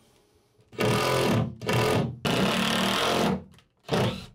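Cordless drill driving a screw through a plywood slat support to pull two plywood layers together. It runs in three bursts of about a second or less, with short pauses between.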